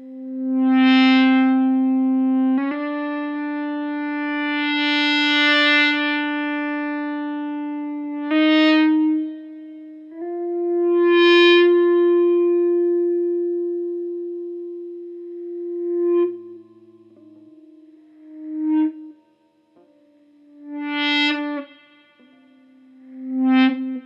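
Electric guitar driven by an EBow in standard mode with the tone rolled back, playing single sustained notes that swell in and fade away like a bowed violin. A series of swells, with the note changing several times and the last few swells shorter.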